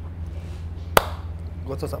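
A single sharp hand clap about a second in, over a steady low hum, with a voice starting to speak near the end.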